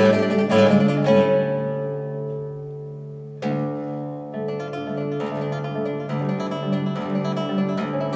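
Classical guitar played solo: a run of quick fingerpicked notes, then a chord left to ring and fade for about two seconds, then a fresh attack about three and a half seconds in and steady plucked notes again.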